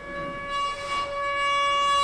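Saxophone holding one long steady note, with a breathy rush of air about a second in.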